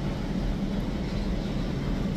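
Steady low hum and rumble of a gym's background machinery, with no sudden sounds.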